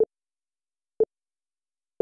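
Electronic countdown timer beeping: three short, identical mid-pitched beeps evenly a second apart, counting down to a start.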